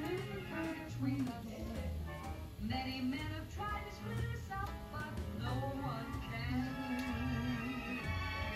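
Orchestral show-tune music from a film soundtrack, playing on a television set in the room.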